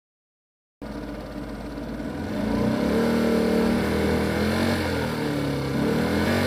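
A motor vehicle's engine running. It cuts in suddenly after about a second of silence, grows louder over the next second or so, then runs on steadily with its pitch shifting slightly.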